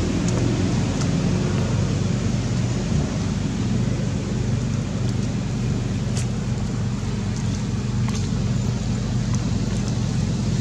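Steady low rumble and hiss of outdoor background noise, unchanging throughout, with a few faint clicks.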